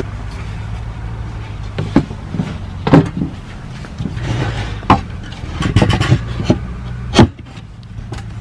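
A plywood board being set down and shifted on an aluminium folding ladder: a series of knocks and bumps of wood on metal, over a steady low hum that stops near the end.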